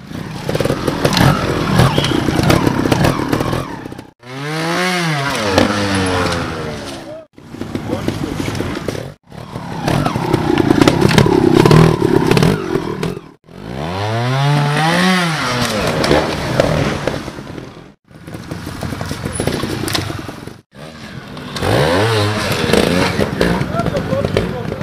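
Trials motorcycle engine being revved in blips as the rider climbs over rocks: the pitch rises sharply and falls back about three times, with rougher running and clatter in between. The sound comes in short stretches broken by brief gaps.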